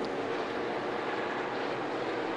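NASCAR Cup Series stock cars' V8 engines running at racing speed, heard as a steady, even wash of engine noise through the broadcast's trackside microphones.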